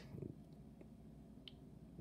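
Near silence: room tone with two faint, short clicks from the plastic action figure being handled in the fingers.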